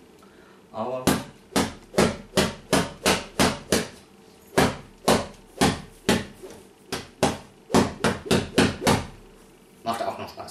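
A short, thin cane swished from the wrist and struck rapidly against a cushion, about twenty sharp whacks at two to three a second with a brief pause midway.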